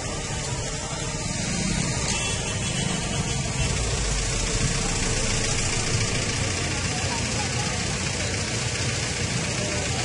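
Outdoor street sound: a steady wash of noise with a vehicle engine running and indistinct voices in the background.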